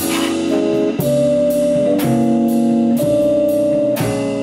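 Jazz trio playing: a Rhodes electric piano holding chords that change about once a second, with upright bass underneath and cymbal strokes on the drum kit.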